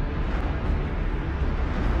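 Low, steady rumble from a sci-fi TV episode's soundtrack over a scene of warships in space, with faint music.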